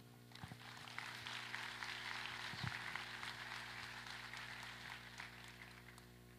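Audience applauding, the clapping building over the first two seconds and fading away near the end, over a steady low electrical hum.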